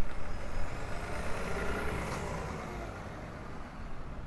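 Street traffic: a motor vehicle passing, its rumble swelling to a peak about two seconds in and then fading, with a faint high whine rising as it approaches.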